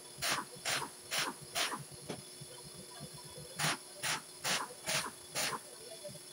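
Compressed-air blow gun fired in short blasts at a car's front brake disc and hub: two runs of quick hissing puffs, about two a second, four then five, with a pause of about two seconds between.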